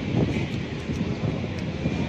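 Steady, low rumbling background noise of a railway station, with some wind or handling noise on the microphone.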